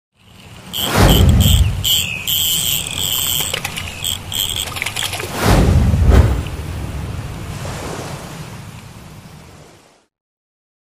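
Intro sound effects for an animated logo. A falling whoosh drops into a deep boom about a second in, followed by a run of short, high chiming tones. A second whoosh and boom comes about five and a half seconds in, then fades out slowly.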